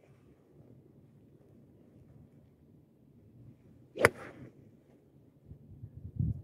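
A golf club striking a ball once: a single sharp crack about four seconds in, over a faint low rumble.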